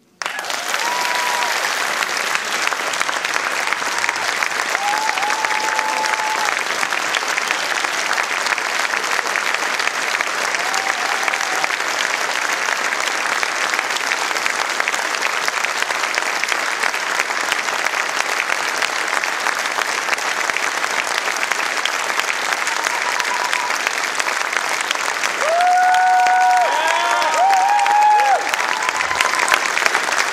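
A large theatre audience applauding steadily, with scattered whoops and cheers; near the end the applause grows louder and the cheering thickens.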